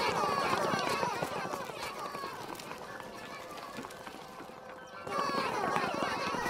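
A crowd of Minions babbling and shouting excitedly in high voices while running, over a patter of many small footsteps. The voices thin out after a couple of seconds and swell again near the end.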